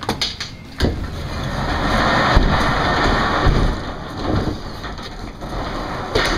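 A padlock and metal hasp being unfastened with two sharp clicks, then a storage unit door being opened: a loud, noisy run of about three seconds with a couple of thumps, fading near the end.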